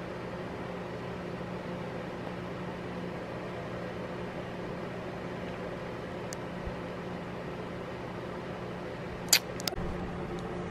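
A steady low mechanical hum, with two or three sharp knocks about nine seconds in.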